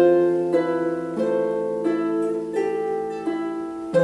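Solo harp played by hand: plucked notes at a slow, even pace, about one every two-thirds of a second, each ringing on and fading over a low bass note that sounds throughout.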